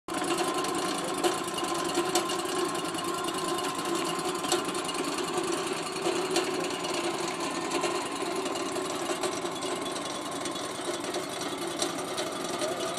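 Sawmill running steadily while sawing a log: a constant mechanical noise with a steady hum, and a few sharp clicks scattered through.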